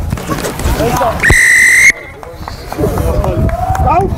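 Referee's whistle: one steady blast of under a second, a little over a second in.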